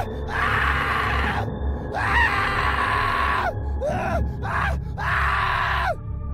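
Several people screaming in overlapping waves, with rising-and-falling shrieks between them, over a low steady music bed.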